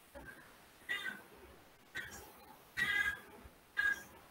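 Five short, high-pitched calls in a row, the longest and loudest about three seconds in.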